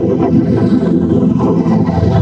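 Heavily distorted, processed logo soundtrack from a logo-effects edit: a loud, dense, buzzing low drone that runs steadily with no breaks.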